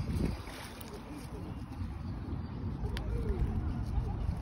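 Wind rumbling on the microphone, uneven and low, with one short sharp click about three seconds in.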